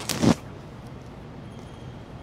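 A short voiced exhale right at the start, falling in pitch, then steady low room noise.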